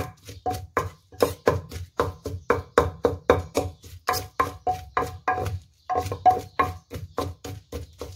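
Wooden pestle pounding in a large clay mortar, steady knocks about three a second, each with a brief ring from the bowl, with a short pause near the end. It is the pounding of roasted chillies and garlic into a chili paste.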